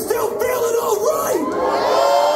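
Concert crowd cheering and shouting, many voices yelling over one another.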